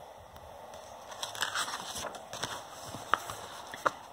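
Rustling and crackling of a picture book's paper page being turned and handled, with two sharp snaps near the end.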